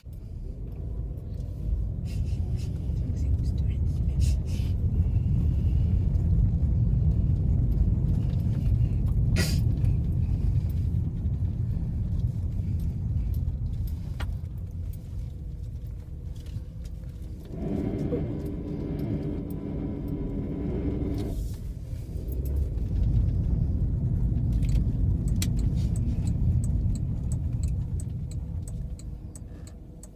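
Road and engine rumble inside the cabin of a Volkswagen New Beetle being driven, a steady low rumble. It eases for a few seconds past the middle, when a steady humming tone comes through, then builds again.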